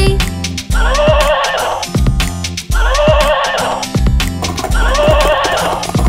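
A horse whinnying three times, each call about a second long and about two seconds apart, over children's backing music with a steady beat.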